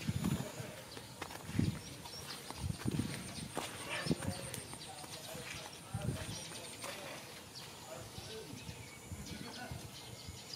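Soft, irregular thumps of footsteps on sandy ground, spaced a second or so apart, with faint voices in the background.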